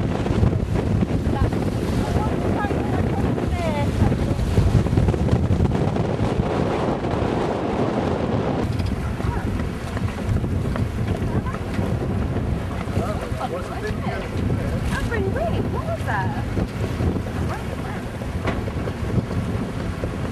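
Strong wind buffeting the microphone on a sailing yacht's deck, a heavy rumble over the rush of choppy water. The sound shifts abruptly about nine seconds in.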